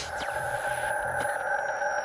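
Electronic logo-intro sound effect: a steady held synthesizer chord with faint gliding whistles above it and a few light ticks.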